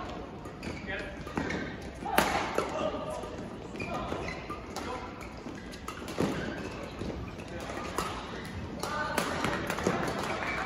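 Badminton doubles rally: rackets striking a shuttlecock, sharp cracks coming irregularly about a second or two apart, with voices in the hall between the hits.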